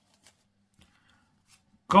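A few faint, soft clicks of trading cards being handled over a playmat, in a near-quiet pause, before a man's voice starts right at the end.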